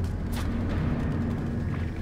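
Film score music: a steady low rumble with a deep, timpani-like drum tone. A single sharp crack comes about a third of a second in.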